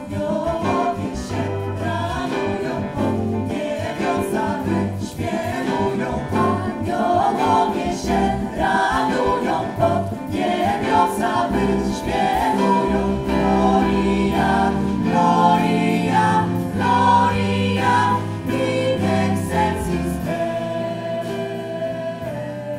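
A jazz vocal ensemble singing in close harmony with piano and drums. A low bass line runs under the voices and drops out near the end.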